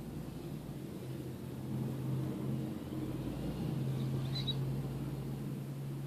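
Steady low hum of a car engine idling, heard from inside the cabin, growing a little louder about two seconds in. A brief faint high squeak comes about four seconds in.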